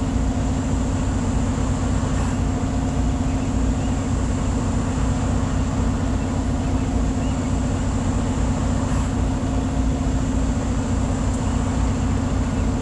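Semi-truck's diesel engine idling steadily, heard from inside the cab as an even low hum and drone.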